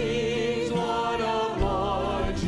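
A man singing a slow worship song into a microphone with instrumental accompaniment, holding long notes with vibrato.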